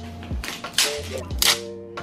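Background music with steady low notes, and two short noisy rips, one about a second in and one at about a second and a half: stickers or protective plastic being peeled off a new electric scooter.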